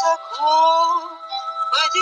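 A solo voice singing a Russian romance over a sustained instrumental backing: one held note that slides up into pitch just after the start, then a short rising phrase near the end.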